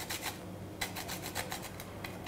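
Whole nutmeg grated on a fine metal rasp grater: quick, short scraping strokes, with a brief pause about half a second in.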